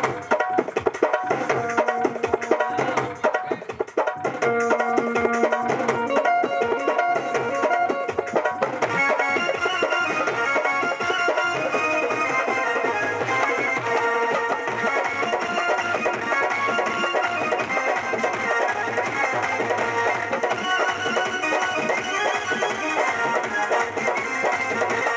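Live Indian folk devotional (bhajan) music, played without singing: hand-played drums keep a steady rhythm under sustained keyboard melody. The melody fills out and grows denser about nine seconds in.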